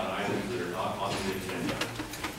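Indistinct voices of people talking in a meeting room, not clear enough to make out words.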